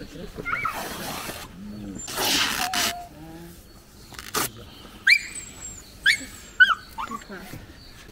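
A dog whimpering: several short, high whines that rise and fall in pitch in the second half. There is a burst of cloth rustling about two seconds in.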